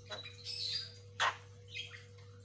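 Javan myna (jalak kebo) giving a quick run of four short, harsh chattering calls, the loudest a little past a second in, over a steady low hum.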